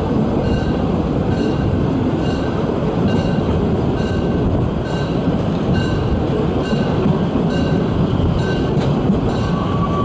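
Lößnitzgrundbahn 2-10-2 narrow-gauge steam train running along a street, heard from an open carriage, with wind buffeting the microphone. A short ringing note repeats evenly, about three times every two seconds.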